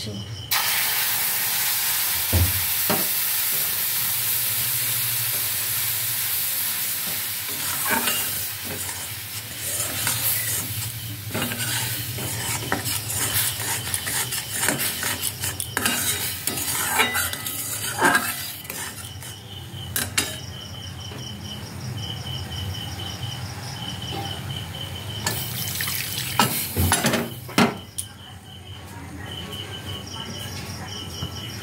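Milk poured onto hot caramelized sugar in an aluminium wok sizzles, the hiss loudest for the first several seconds and then dying down. A flat metal spatula clinks and scrapes against the pan as the mixture is stirred. Crickets chirp in the background.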